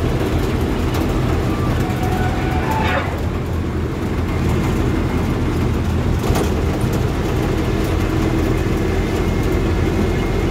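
A heavy vehicle's engine running steadily while driving, heard from inside the cab, with road noise and a brief knock about three seconds in and another after six.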